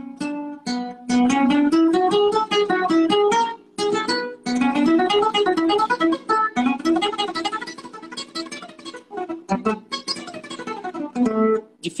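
Classical (nylon-string) guitar played fast: rapid single-note scale runs that climb and fall in pitch, picked with two alternating fingers as speed practice, with a short break about four seconds in.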